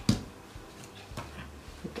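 One sharp knock of kitchenware on the counter near the start, then a few faint light clicks as things are handled.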